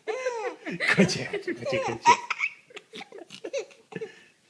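A baby laughing in high-pitched bursts of giggles and belly laughs while being tickled, most of it in the first half, thinning out near the end.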